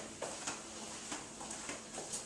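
A few faint clicks and taps in a quiet kitchen: small handling noises of a serving spoon and dishes at a counter.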